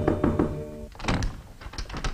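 Background music with held notes that ends about a second in, followed by a few knocks and thuds from a wooden door as it is opened.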